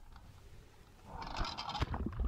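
Faint water noise with a few low knocks and scrapes, picked up by the anchor-test camera at the bow and under the water. It starts about a second in.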